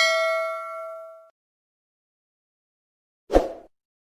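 A bell 'ding' sound effect, timed to a cursor clicking a notification-bell icon, rings out and fades over about a second. Near the end comes a brief rushing noise.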